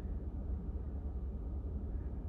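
Low, steady rumble inside a vehicle cabin, with no other distinct sound.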